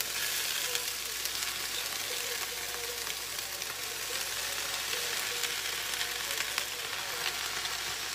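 Diced sweet onions frying in a pan over medium heat: a steady sizzle with fine crackles.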